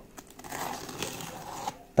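Plastic wrapping film on a parcel crinkling as it is handled, a rustling noise with a few small clicks that stops shortly before the end.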